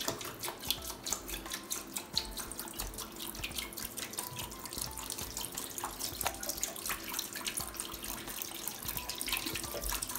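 Hydrogen peroxide poured from a bottle in a steady stream, splashing into a clear plastic tub already holding liquid.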